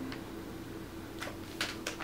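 Quiet room with a faint steady hum and a few brief, soft noises while a plastic clamshell of wax melts is held to the nose and sniffed.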